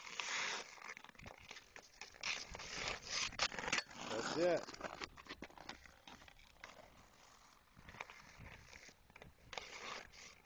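Ice hockey skates scraping and carving on outdoor rink ice, with sharp clicks of a stick on the puck and the ice, in uneven bursts. It goes quieter for a few seconds past the middle, then picks up again near the end as the player stickhandles in.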